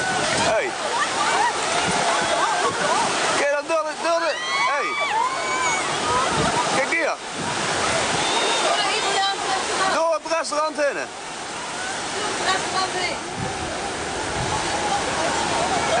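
Tsunami surge rushing inland as a steady wash of water noise, with people shouting over it throughout.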